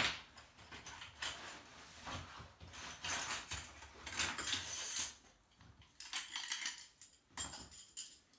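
Metal tent poles clinking and scraping as they are handled and fitted together, with the tent's canvas rustling; a sharp click right at the start, then irregular short clatters with a brief lull past the middle.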